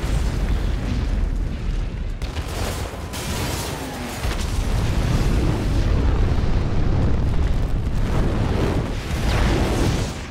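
Film sound effects of a chain of huge explosions: continuous deep booming and rumble of fireballs and debris, with sharp blasts cutting in about one and a half, two and three seconds in.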